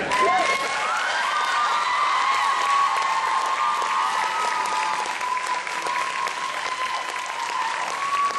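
Audience applauding steadily throughout, with a long, high-pitched sustained tone that wavers slightly held over the clapping.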